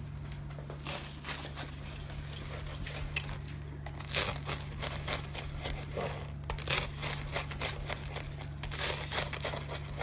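Large knife cutting through the crisp crust of a pressed toasted sandwich on a wooden cutting board: repeated crunching, crackling cuts that come thicker in the second half. A steady low hum runs underneath.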